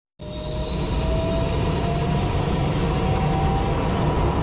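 Jet engine running: a steady rumble with thin whines that slowly rise in pitch, starting suddenly just after the start.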